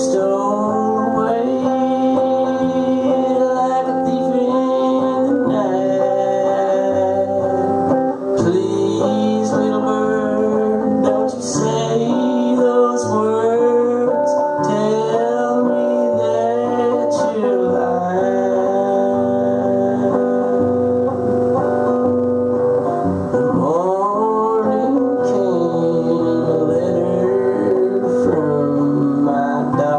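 Live solo acoustic guitar strummed and picked in a blues song, with a man singing over it at intervals.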